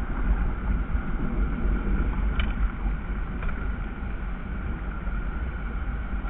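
Steady low rumble of wind on an outdoor camera microphone, with a small click about two and a half seconds in.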